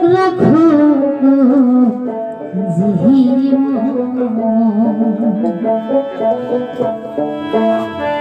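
A woman singing a Bengali folk song into a microphone with a wavering, ornamented voice, accompanied by hand drum and keyboard. The voice drops out a little past halfway and the instruments carry on.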